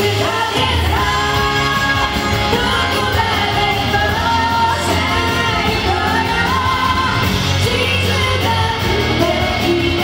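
A woman singing into a microphone over loud pop backing music played through a PA system.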